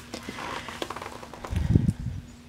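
Handling noise from a plastic-wrapped paper pad being unwrapped and turned over: light rustling and small clicks, with a low thump near the end as the pad is bumped.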